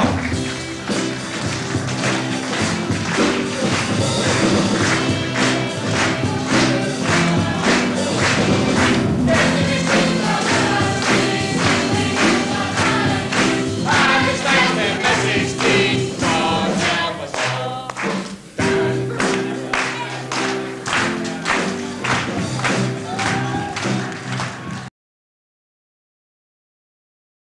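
Live band of bass, drums, guitar and piano playing a closing song, with the cast singing together in chorus to a steady beat; the sound cuts off suddenly near the end.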